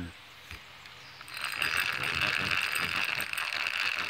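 Fishing reel being cranked, starting about a second in: a fast run of fine mechanical clicks from the reel's gears as line is wound in.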